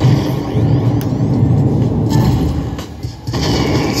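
Konami Prize Strike slot machine playing its bonus-round sound effects: a loud low rumbling effect with a few sweeping tones over it in the first half. The sound dips briefly about three seconds in.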